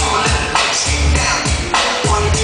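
Music mixed live by a DJ on turntables, loud, with a steady beat of deep bass hits and sharp drum strokes.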